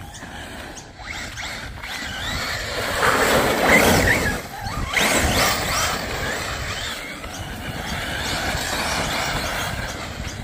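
Arrma Typhon TLR Tuned 1/8-scale RC buggy running on a 1650kV brushless motor on 6S, its high motor whine rising and falling with the throttle. The tyres scrabble over loose dirt, loudest about three to five seconds in.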